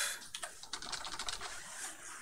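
Fast typing on a computer keyboard: a quick, uneven run of keystroke clicks.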